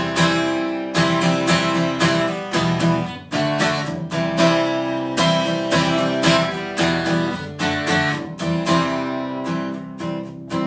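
Steel-string dreadnought acoustic guitar strummed in a steady rhythm, chords ringing with no singing over them.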